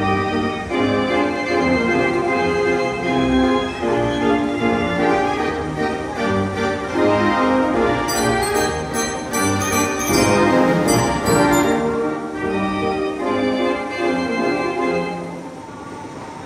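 Fairground organ music playing on a gallopers carousel, with percussion strokes in the middle, fading near the end.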